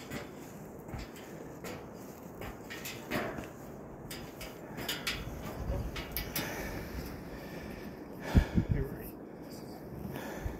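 Footsteps and scattered clanks and knocks on a steel grate staircase, with a burst of loud low thumps a little past eight seconds in.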